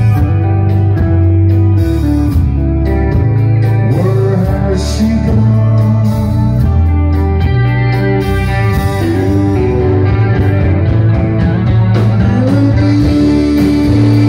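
Live rock band playing: electric guitars, bass guitar, drums and keyboards together, loud and steady, with the bass holding long notes and guitar lines sliding between pitches.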